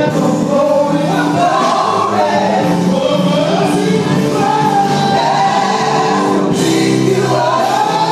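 Live gospel song: a male vocal group singing together into microphones over steady instrumental backing.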